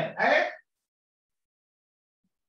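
A man's voice says one short word about half a second long. Then there is dead silence, as if the audio was cut off.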